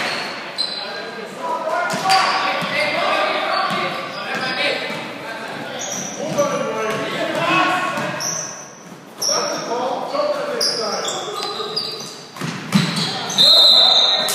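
Basketball being dribbled on a hardwood gym floor, with short high sneaker squeaks and indistinct shouts from players and spectators echoing around a large gymnasium.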